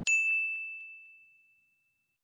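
A single bright, bell-like ding, the closing chime of the outro music, struck once and ringing out on one high pitch as it fades away over about a second and a half.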